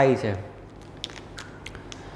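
A man's voice trailing off, then quiet room tone broken by four or five faint, sharp clicks.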